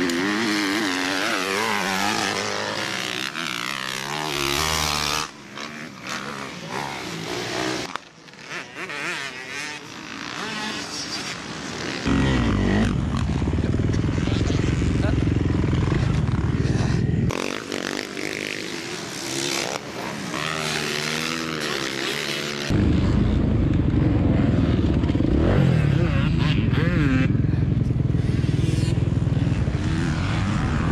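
Motocross dirt bike engines revving up and down through the gears as riders go round a dirt track, in several short cuts. From about twelve seconds in the engine sound is closer, louder and steadier, with heavy low rumble, heard from on the bike itself.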